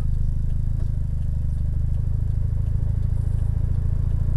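Mitsubishi Lancer Evolution IX's turbocharged four-cylinder engine idling with a steady, even low rumble, picked up by a dashcam mounted inside the stationary car.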